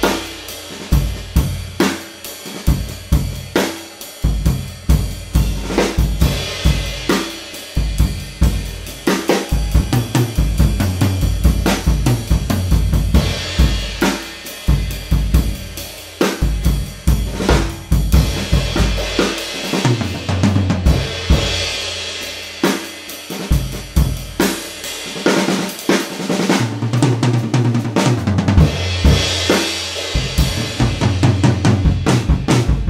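Gretsch Brooklyn drum kit tuned low, played with sticks in a continuous groove: a 20-inch bass drum with a Powerstroke head, 12-inch tom and 14-inch floor tom, a 1920s Ludwig 4x14 Dance Model brass-shell snare, hi-hat and ride cymbals. Cymbal wash swells in several stretches, among them one near the end.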